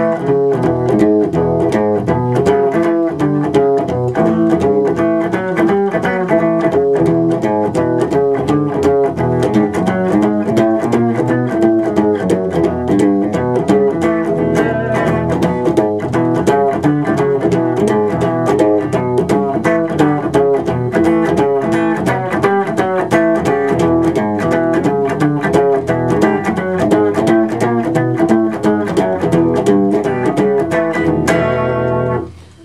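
Blues rhythm guitar in E: the right hand is constantly going, strumming a steady rhythm, while the left hand plays bass lines and mutes the other strings so they give a percussive sound.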